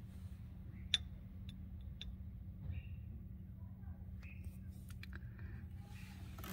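Small metal tools being handled: a few faint, sharp clicks, the first three about one, one and a half and two seconds in, over a steady low hum.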